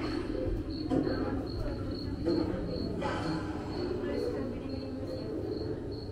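Cricket chirping, one high chirp repeating evenly about three times a second. It is a recorded forest ambience played in a haunted-house style museum exhibit.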